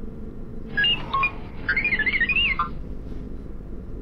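Robot sound effect: a string of short electronic beeps that turns into a quickly wavering, chirping warble, lasting about two seconds, over a steady low spaceship hum.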